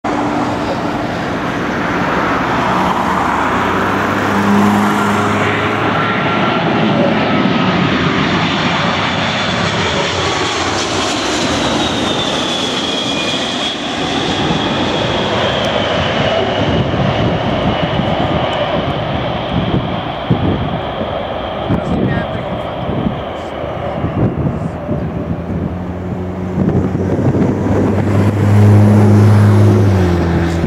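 Boeing 767-300ER's two Rolls-Royce RB211 turbofans on landing approach: loud, steady jet noise with a high whine that falls in pitch as the airliner passes the listener. Once it is past, the noise turns rough and uneven, and a low hum grows louder near the end as the jet touches down.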